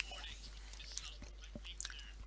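Faint, steady hum of an open voice-chat line, with scattered soft clicks and faint murmurs.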